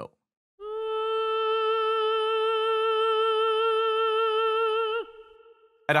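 Sampled operatic soprano from the EastWest Voices of Opera 'Soprano Ah' sustain patch, holding one sung 'ah' note with steady vibrato for about four seconds. It is played at medium velocity, so the note swells in on the front end. It is released about five seconds in, leaving a short fading tail.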